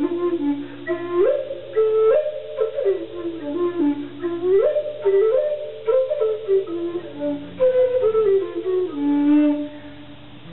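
A wooden end-blown flute playing a slow melody of stepping, slurred notes in short phrases, ending on a long held low note near the end.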